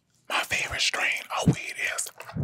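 A voice whispering close into a microphone, soft breathy ASMR-style speech.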